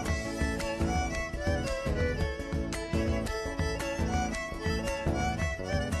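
Live Argentine chacarera played instrumentally: a fiddle carries the melody over strummed guitar and a driving, steady rhythmic pulse, an interlude between sung verses.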